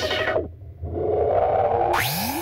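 Electronic dance music run through a DJ filter effect. The highs are swept away, the track dips briefly and a single held tone carries on, then the full sound cuts back in at the very end as a transition.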